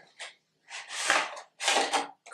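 Rustling and scraping as a makeup brush set's box and its contents are handled and the brushes taken out: a short rustle near the start, then two longer rustles of about half a second each.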